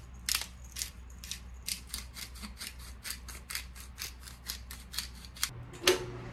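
Spice grinder being twisted over the dish, clicking in a steady rhythm of about four grinds a second. Near the end comes a single clunk as an oven door is pulled open, with a low steady hum behind it.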